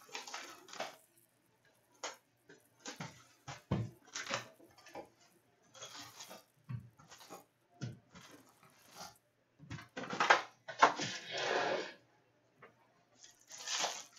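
Cardboard trading-card hobby box being opened and its foil packs handled: a string of short taps, scrapes and crinkles, with a longer, louder rustle about ten seconds in.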